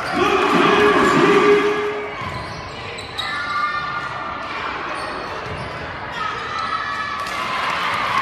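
Gym sounds of a basketball game: the ball bouncing on a hardwood court, sneakers squeaking and players and spectators calling out. A loud held tone lasts for about the first two seconds.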